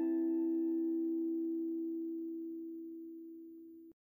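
Background music: one low ringing note with its overtones fading away slowly, which cuts off abruptly just before the end.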